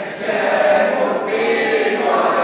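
A group of school pupils singing together like a choir, holding notes with a brief break about a second in.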